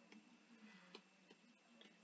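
Near silence with a few faint, short ticks: a stylus tapping lone-pair dots onto a drawing tablet.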